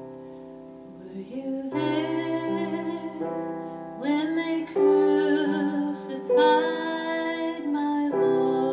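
Held piano chords dying away, then a woman starts singing a slow, sustained melody over soft piano accompaniment about a second and a half in.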